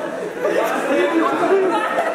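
Several people talking over one another: overlapping conversational chatter.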